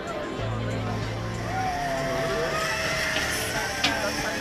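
Zip-line trolley whirring along the steel cable as a rider goes down, with a thin whine that slides in pitch. A sharp click comes near the end.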